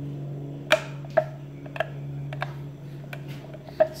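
A manually adjustable car side-mirror glass being tilted by hand on its pivot, giving about six short, sharp clicks at irregular intervals over a steady low hum.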